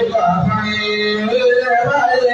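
A man singing an Arabic madh, a praise song for the Prophet, into a microphone in long, ornamented held notes that waver and glide between pitches.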